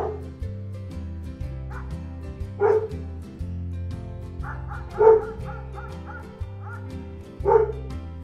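Doberman barking with its head raised: four barks a couple of seconds apart, the one near the middle the loudest and followed by a short run of smaller calls. Background music with a steady beat runs under it.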